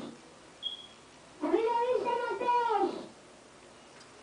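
A young boy's high-pitched voice: a run of drawn-out syllables that swoop up and down in pitch, lasting about a second and a half in the middle.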